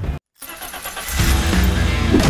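After a brief cut to silence, a cartoon-style car engine sound effect builds up, and an upbeat music jingle comes in about a second in.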